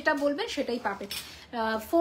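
A woman's voice speaking in short phrases.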